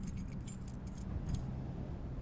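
Light metallic jingling in four or five quick clusters over the first second and a half, from the small metal latch of a wooden box being fiddled with. A low steady hum runs beneath it.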